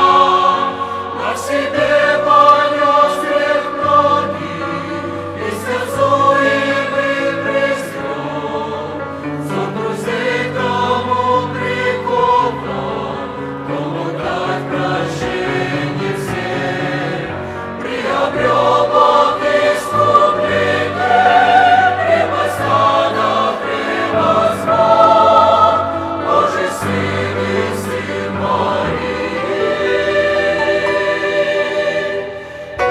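Mixed choir of men's and women's voices singing a hymn in parts. It sings more softly through the middle and swells louder again in the last third.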